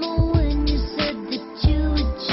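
Pop ballad with a female lead vocal holding and gliding between notes over drum hits and a deep bass line.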